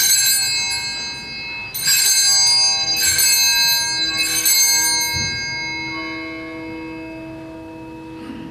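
Altar bells (Sanctus bells) rung at the elevation of the consecrated host, in about four bright shakes a second or so apart. Each shake rings out and slowly fades, and deeper ringing tones linger after the last one.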